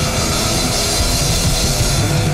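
Punk rock band playing live at full volume: electric guitar, bass guitar and drum kit, with a steady wash of cymbals.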